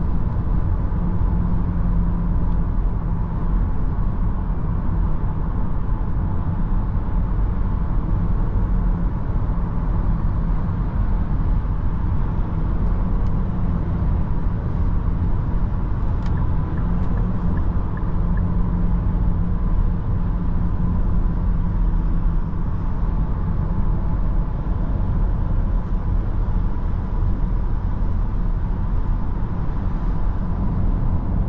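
Cabin noise of a Nissan X-Trail e-Power SUV cruising on the motorway: steady tyre roar and wind noise with a constant low hum underneath.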